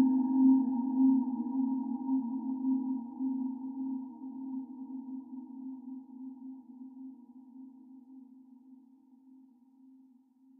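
Ambient sleep music closing on a single held low tone with faint overtones, fading out slowly and dying away near the end.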